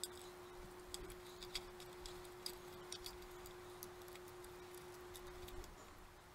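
Faint, irregular small clicks and taps of a plastic project box and wire leads being handled as the wires are fed through a drilled hole. A faint steady hum sounds underneath and cuts off near the end.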